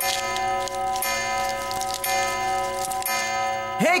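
Cartoon grandfather clock chiming, repeated bell strikes ringing on over one another as it strikes the hour. Near the end a high voice calls "Hey".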